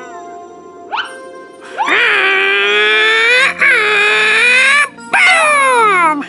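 Cartoon monkey character's high, whining non-verbal vocalising: a short rising squeak, then two long drawn-out cries, then a falling call near the end. Light background music runs underneath.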